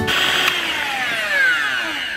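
Electric hand mixer with twin beaters, its motor whine falling steadily in pitch as it slows to a stop and fades near the end. Beating of the ice-cream mixture is finished: it has doubled in size.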